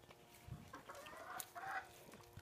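A chicken clucking: a few short calls in the second half, louder toward the end. There is a low thump about half a second in.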